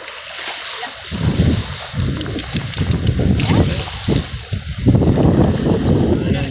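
Wind buffeting the phone's microphone, a low rumble in uneven surges that starts about a second in and grows louder toward the end.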